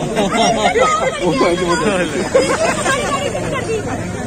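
Several people talking over each other at once, a heated, overlapping exchange of voices.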